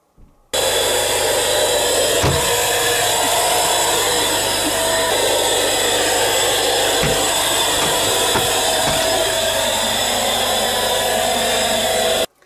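Vacuum cleaner running steadily at a loud level, used to suck flies out of a camper, with a few faint knocks.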